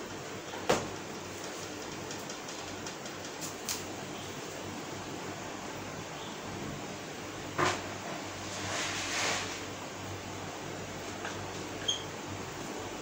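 Steady room hum and hiss broken by two sharp knocks on a whiteboard, one about a second in and one about seven and a half seconds in, with a brief rubbing or brushing sound just after the second.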